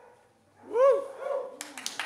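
A short, loud call that rises and falls in pitch, followed by two smaller ones, then an audience starts clapping near the end.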